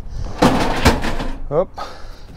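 A scraping rush with two sharp knocks, about half a second and a second in, as hard items are shifted around among stacked computer equipment.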